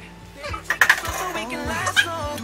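Background music with a singing voice, with a couple of sharp kitchen clicks: a short cluster about a second in and one at the very end.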